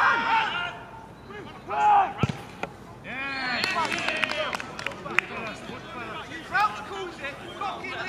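Football players shouting, then a single ball strike with a thud a little over two seconds in. Several men's voices then shout and cheer together as the shot goes in for a goal.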